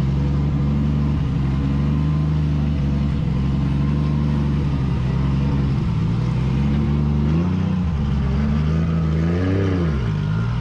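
BMW drift car's engine idling steadily while creeping forward, then blipped twice near the end, the revs rising and falling quickly each time.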